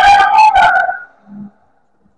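Basketball sneakers squeaking on a gym floor, with a few sharp knocks, for about the first second; then the sound drops away almost to nothing.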